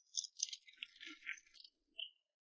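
Faint rustle of heavy cloth tent curtains being pushed apart as someone walks through, mixed with a few small clicks, lasting about a second and a half.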